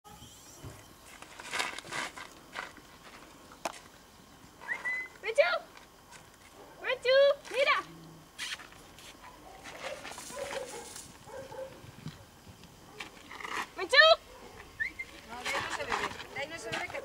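High-pitched swooping vocal calls in short groups, about five, seven to eight and fourteen seconds in, with quiet rustling between them.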